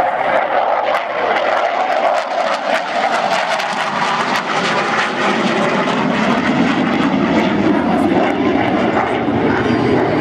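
Jet fighter flying by with loud, continuous engine noise. The sound drops lower in pitch in the second half as the aircraft passes.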